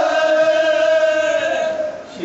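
Men chanting a mourning lament in chorus into a microphone, holding one long note that trails off near the end.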